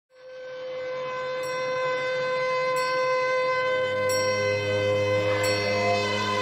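Soundtrack music fading in from silence: sustained bell-like chime tones, a faint high tick about every second and a half, and a low bass note swelling in about four seconds in.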